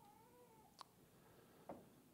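Near silence in a quiet room: a faint drawn-out squeak or whine under a second long, falling slightly in pitch, then two soft clicks about a second apart.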